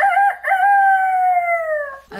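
A rooster crowing: a few short notes, then one long call that slowly falls in pitch, louder than the talk around it.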